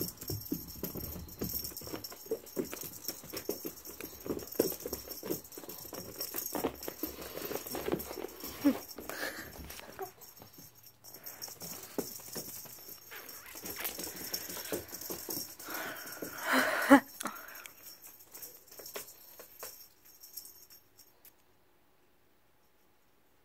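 A house cat playing with a feather wand toy on carpet: a run of irregular small taps, scuffles and rattles as it pounces and the toy is flicked about, with one short, loud animal cry about three quarters of the way through.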